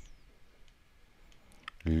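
Faint clicks and taps of a stylus writing on a tablet screen, a few of them in the second half, with a man's voice starting to speak just before the end.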